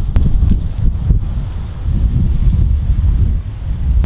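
Wind buffeting the microphone: a loud, gusting low rumble, with one sharp click just after the start.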